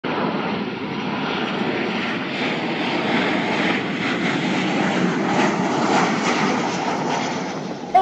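Jet engines of a narrow-body twin-jet airliner flying low on landing approach: a steady, even engine noise with hiss.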